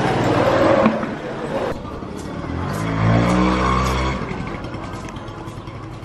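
Small moped engine revving up, rising in pitch for about a second and a half before stopping abruptly about four seconds in, over the chatter and bustle of a busy market alley.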